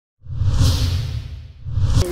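A loud rushing whoosh with a deep rumble underneath, swelling twice and cutting off abruptly.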